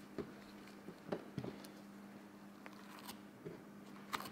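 Faint, scattered small clicks and scrapes of a knife cutting flesh and tendon along a deer skull's lower jaw, a few irregular strokes over a steady low hum.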